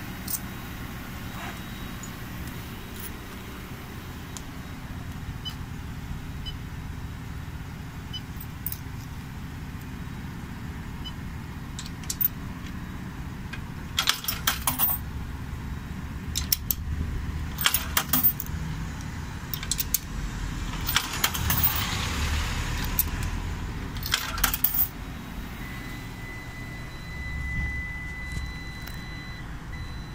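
Steady low hum of commercial laundrette washers and dryers running. In the middle comes a cluster of sharp clicks and rattles as the payment kiosk is handled, and near the end a thin steady electronic tone sounds for a few seconds.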